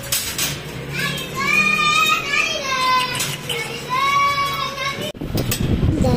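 Husky puppies whining: several drawn-out, high-pitched whines, some bending up and down, one after another. After a sudden break near the end, lower, wavering cries follow.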